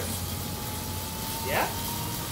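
Road bike's rear wheel spinning on a wheel-on indoor trainer under hard pedalling in the smallest cog: a steady low hum with a thin whine that rises slowly in pitch.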